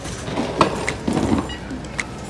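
Footsteps and a few sharp clicks of bags and fittings on a jet bridge, over a low steady rumble.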